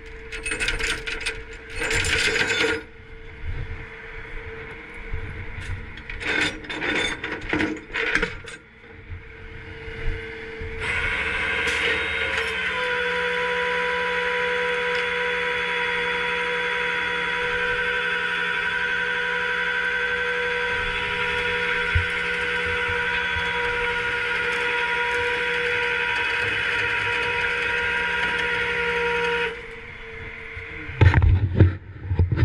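Steel tow chain and grab hook clinking and rattling against the flatbed's diamond-plate deck as the chain is hooked to a crashed car's front end. From about 11 seconds in, the rollback flatbed's hydraulics run with a steady whine, which cuts off shortly before the end.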